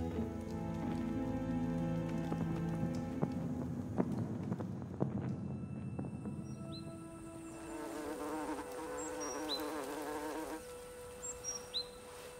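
Insects buzzing around flowers, a wavering buzz that rises and falls, with small birds giving short high chirps over it from about halfway through. A few soft drips and held music notes fade out in the first seconds.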